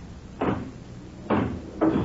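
Pinball machine being played: a few sharp knocks as the ball is struck, about half a second in and twice more in the second half.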